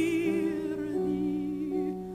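Mezzo-soprano voice singing held notes with a wide vibrato over piano accompaniment. The voice stops near the end, leaving the piano sounding alone.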